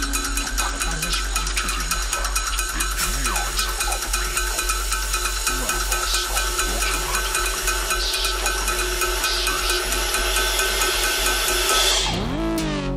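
Live electronic music: a steady held synthesizer drone under rapid, even percussion strikes on white buckets played as drums, with cymbals.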